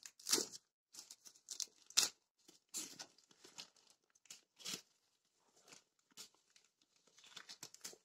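Plastic shipping mailer being cut with scissors and pulled open by hand: a string of short, irregular crinkles and snips.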